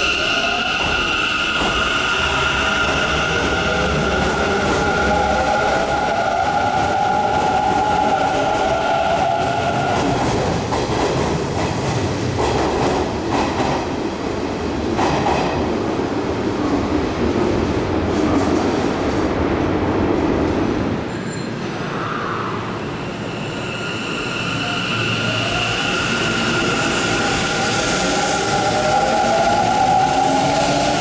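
Mitsubishi IGBT-VVVF inverter of a Hanshin 5550 series electric train accelerating away: two steady high inverter tones with a motor whine rising in pitch beneath them. This gives way to running noise and rumble as the cars pass. A second inverter whine with the same steady tones and rising pitch starts again near the end.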